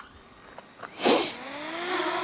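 A short, loud burst of noise about a second in, then the Hubsan Zino Mini Pro's brushless motors spinning up: a whine that rises in pitch and settles into a steady hum as the drone starts for take-off.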